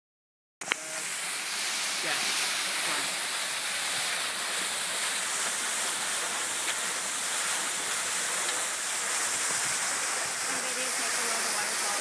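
Steady rush of fast-flowing glacial meltwater, an even hiss that cuts in suddenly with a click about half a second in. Faint voices come through near the end.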